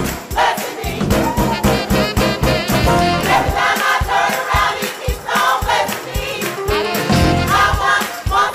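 Gospel choir singing in full voice over a steady, regular beat.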